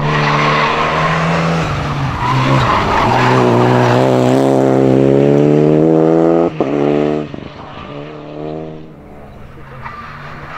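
Renault Clio rally car's engine pulling hard out of a hairpin, its pitch rising steadily for several seconds, cutting sharply at a gear change about six and a half seconds in, then fading as the car drives away. Another rally car's engine is faintly heard approaching near the end.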